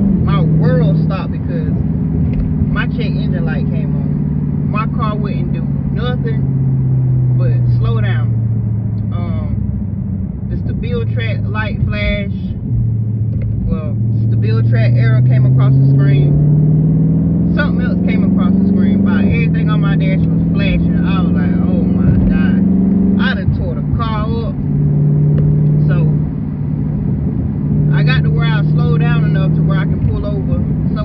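Dodge Charger 392 Scat Pack's 6.4-litre HEMI V8 heard from inside the cabin while driving, a steady low drone. Its pitch sinks as the car eases off, then climbs under acceleration and drops twice in the second half as it shifts up. A woman's voice talks over it.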